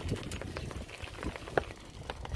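Footsteps crunching on a dirt road: irregular small clicks and crackles over a low rumble, with one sharper click about one and a half seconds in.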